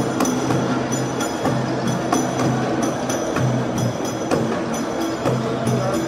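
Traditional Gulf troupe beating large hand-held frame drums, sharp strikes about twice a second, over a low sustained tone that breaks off and resumes.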